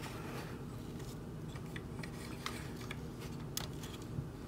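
Faint handling noise of a hard plastic action figure and its parts: a few light clicks and rubs as the pieces are turned and fitted, over a low steady hum.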